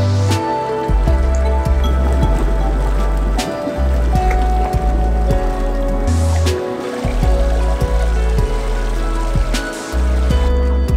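Background music: sustained chords over deep held bass notes, with a soft regular beat.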